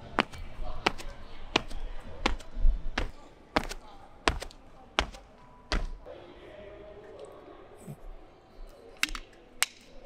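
Feet landing on an indoor rubber track during repeated two-footed hurdle hops: sharp thuds at an even rhythm, about one and a half a second. The thuds stop about six seconds in, and two lighter taps come near the end.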